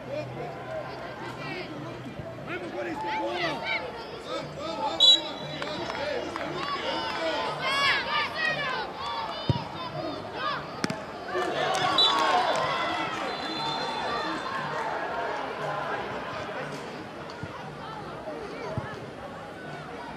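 Children's and adults' voices shouting and calling across a football pitch, with a few sharp knocks of the ball being kicked.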